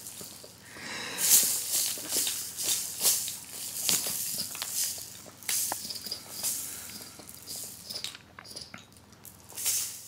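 A plastic baby rattle toy being shaken and knocked about by a baby's hands, its beads rattling in uneven bursts of clicks and shakes, loudest about a second in.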